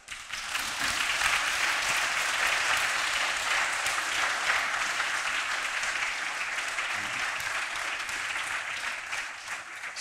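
Audience applauding, steady and slowly tapering off near the end.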